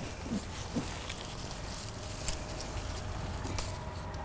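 Quiet outdoor ambience with a steady low rumble, and faint scattered ticks and rustles as cucumber vines are handled, one tick a little sharper about two seconds in.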